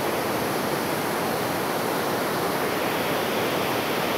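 Large waterfall pouring down over rock into a pool, heard up close as a steady, even rush of falling water.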